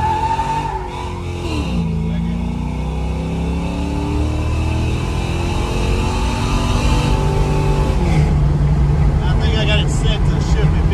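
2006 4.8-litre LS V8 under full throttle, heard from inside the cabin: the engine pitch falls early on as it shifts up, then climbs steadily for several seconds as the car accelerates. It drops again at about eight seconds and then holds steady.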